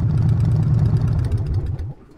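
Harley-Davidson cruiser's V-twin engine idling, then switched off: the idle note sags and winds down over the last half second and stops right at the end.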